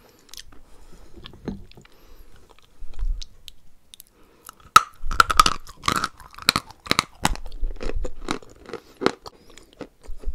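Close-miked chewing of a wet, crumbly white mineral paste in the mouth. Soft, squishy mouth sounds come first; from about halfway a quick run of sharp crunches follows, thinning out near the end.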